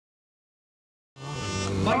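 Silence, then about a second in a stunt motorcycle's engine fades in, running at a steady pitch. A commentator's voice begins near the end.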